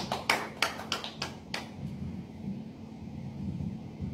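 Applause from a small audience, the separate claps of a few people heard distinctly, about three a second, dying away about a second and a half in.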